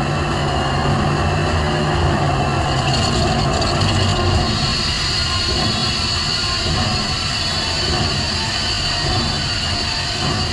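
Cartoon sound effects of a helicopter flying through a freezing storm: a steady mechanical rumble with a high whine that comes in about three seconds in, over a hiss of wind and sleet, as its rotors ice up.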